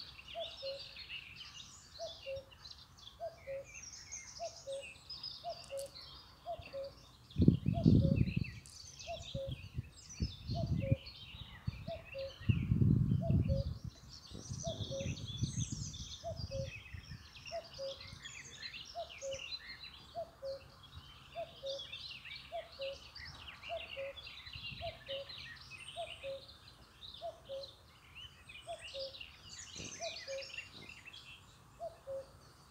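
Many small birds chirping and singing, with a steady electronic beep that repeats about three times every two seconds, alternating between two pitches. Low rumbles break in around 8 seconds in and again around 13 seconds in, louder than the rest.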